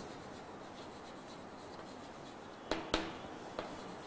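Chalk writing on a blackboard: faint scratching, with a few light taps of the chalk on the board near the end.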